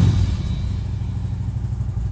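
Motorcycle engine idling with a fast, steady low pulse.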